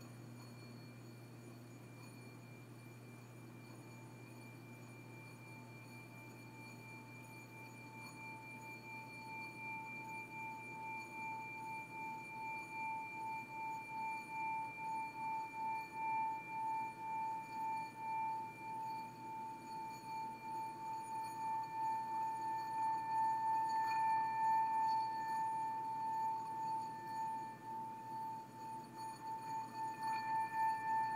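Small metal singing bowl rubbed around the rim with a wooden stick, so that it sings: faint at first, a single held tone builds from about eight seconds in, wavering in an even pulse and growing louder, with a higher overtone joining partway through.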